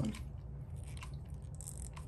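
Hex driver turning a self-tapping screw into a plastic RC front suspension arm: faint creaking and scraping as the screw cuts its own thread, with a few small clicks.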